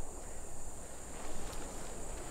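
Quiet night ambience: a steady high-pitched insect drone over a soft, even background hiss.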